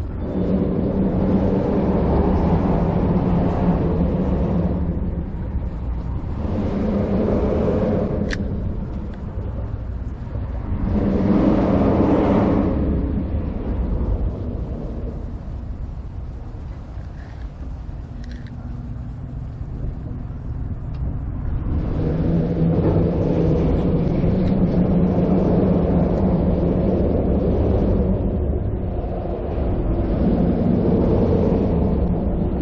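Passing motor vehicles rumbling by in several swells, each rising and fading over a few seconds, with a quieter lull in the middle and a long steady stretch near the end.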